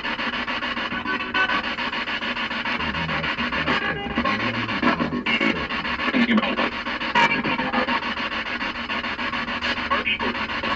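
Spirit box sweeping: continuous choppy static, chopped up by short breaks, with brief snatches of music coming through.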